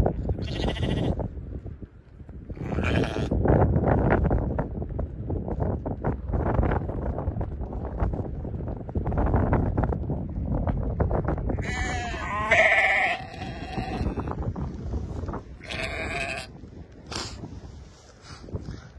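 A flock of Karakachan sheep bleating several times, separate calls over a constant low rustling and shuffling of the crowded animals.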